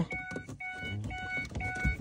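Electronic warning beeps repeating about twice a second, each a short steady chime of several pitches at once, with a soft low thump near the end.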